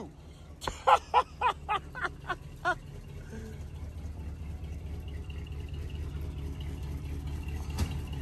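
Box Chevy's engine running with a steady low rumble as the car pulls away, growing gradually louder over the second half. A man's voice is heard briefly in the first few seconds.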